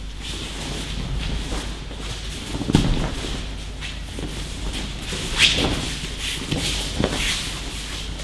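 Aikido throws and breakfalls on mats: bodies landing with a few thuds and slaps, the sharpest about halfway through, among shuffling bare feet.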